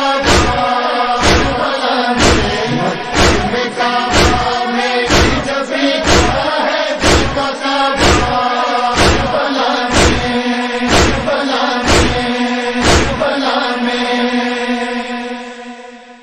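A chorus of male voices holds a wordless chanted drone over matam, rhythmic chest-beating thumps about once a second. The beats stop about 13 seconds in, and the held voices fade out near the end.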